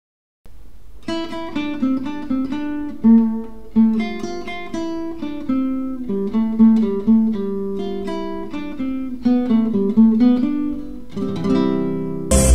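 Acoustic guitar music: a melody of single picked notes and chords, starting about half a second in.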